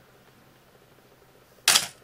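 Canon AE-1 35mm SLR shutter and mirror firing once at the end of its self-timer countdown: a single short, sharp clack about a second and a half in, showing the self-timer completes its cycle properly.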